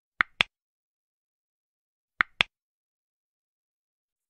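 Mouse-click sound effect from a subscribe-button animation: two pairs of sharp clicks, the second pair about two seconds after the first, with dead silence between them.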